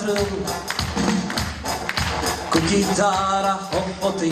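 A man singing to his own strummed steel-string acoustic guitar, amplified through the stage microphones. The guitar strums keep on throughout, and a sung line comes in about three seconds in.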